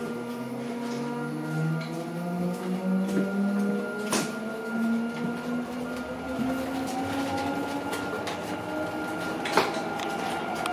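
Electric articulated bus heard from inside the cabin as it pulls away, its electric drive whining and rising slowly in pitch as it gathers speed, over a steady hum of onboard equipment. Two sharp knocks from the body, one about four seconds in and one near the end.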